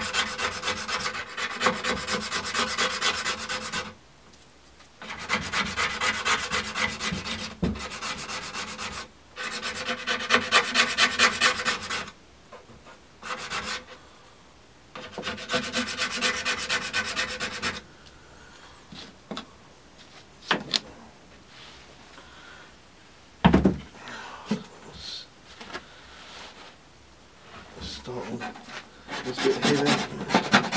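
A metal scraper rasps softened varnish and gel paint stripper off the wooden veneer of a vintage TV cabinet, in strokes of a few seconds each with a fast, chattering tick. The stripper has only partly lifted the finish. The strokes stop after about 18 seconds, leaving a few light knocks and one louder knock, then the scraping starts again near the end.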